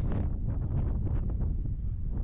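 Wind buffeting the microphone on an open ship's deck: a steady, gusty low rumble.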